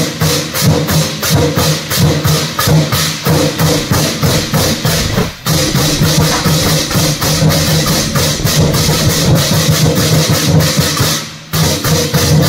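Vietnamese lion-dance drum ensemble playing a fast, even beat of many drums struck together. It stops briefly about five seconds in and again just before the end, then comes straight back in.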